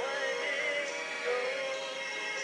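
A chart-topping pop song playing, with a singer's voice over the backing music.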